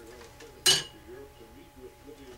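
A single sharp, bright clink about two-thirds of a second in: metal parts knocking together as a homemade electromagnet pulser's coil is swapped and set up on a desk.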